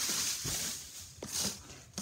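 Rustling handling noise close to the microphone for about the first second, then a few short soft knocks, as Lego boxes and packaging are moved about.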